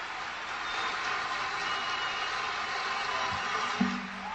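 Concert audience applauding steadily as a song ends, with a single thump near the end.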